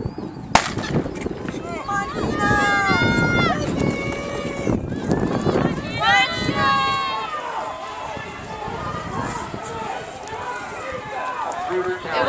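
A starter's pistol fires once, sharply, about half a second in, then spectators yell and cheer loudly for the sprinters, the shouting fading somewhat in the second half.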